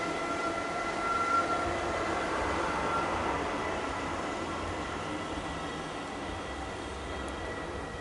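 A steady mechanical rumble and hiss with two faint, steady high whines running under it, easing slightly over the seconds.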